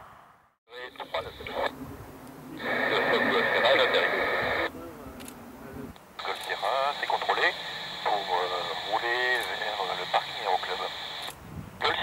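Air traffic control radio transmissions heard over a scanner: thin, tinny radio voices in separate calls with short gaps between them. They begin after a brief silence.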